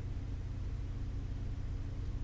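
A steady low hum of background room noise, with no distinct events.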